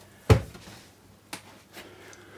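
A sharp knock about a third of a second in, then a lighter click about a second later: objects being handled and put down on a workbench.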